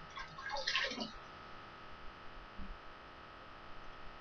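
Water splashing in a bathroom sink as a face is rinsed by hand: one short burst about a second in, then quiet.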